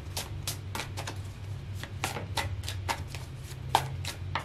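A deck of tarot cards being shuffled by hand: a quick run of short card slaps and flicks, about three to four a second, with one sharper snap just before the end.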